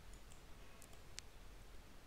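Near silence with a few faint, short computer mouse clicks.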